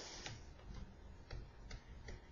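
A handful of faint, irregularly spaced light clicks from the pen or mouse used to pick a colour and hand-write digits on a digital whiteboard.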